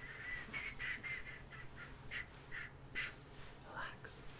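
Close-miked ASMR shushing: a long breathy "shhh" that breaks up about half a second in into a string of about ten short "sh" sounds, spaced further apart as they go.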